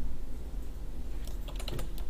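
A quick run of about five sharp plastic clicks at the computer, typical of keys and mouse buttons being pressed, near the end over a steady low hum.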